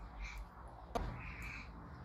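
A girl's quiet, breathy giggles, with a single soft click about a second in.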